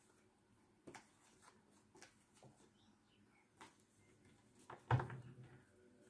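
Tarot cards being handled and laid on a cloth-covered table: a few faint, scattered clicks and taps, then one louder short sound about five seconds in.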